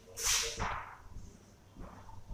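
A marker on a whiteboard: one short scratchy stroke about a quarter second in, then a few faint scratches as writing goes on.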